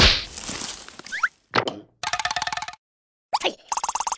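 Cartoon slapstick sound effects: a sudden hit at the start that dies away, then quick rising glides and a short burst. After that comes a fast, evenly pulsing, wobbling tone, twice, with abrupt cuts to silence between.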